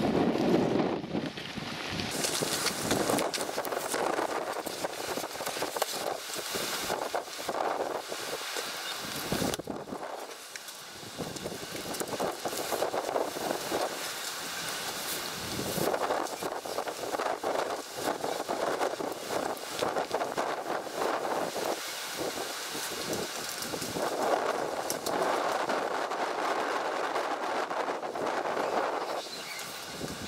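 Wind buffeting the microphone in uneven gusts, mixed with rustle and light knocks from a plastic tail-lamp housing being handled.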